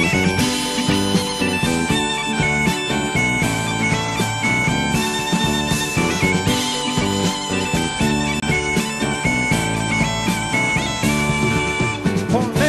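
Background music: an instrumental passage of a folk song, with a gaita (bagpipe) playing a melody over a steady drone.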